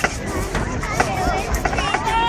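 Indistinct chatter of nearby spectators' voices, with a few short clicks.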